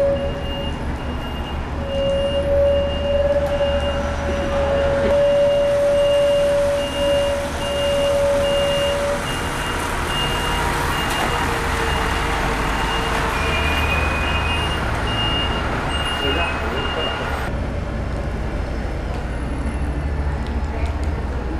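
Diesel bus engines running as the buses manoeuvre, with a high-pitched reversing alarm beeping at an even rhythm that stops about two and a half seconds before the end.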